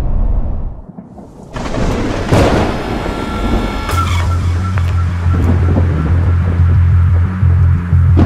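Channel intro sound design: a sudden, loud noisy swell with a rumble about a second and a half in, then a low pulsing drone that carries on to the end. Just before it, the truck's cabin road noise runs briefly and fades out.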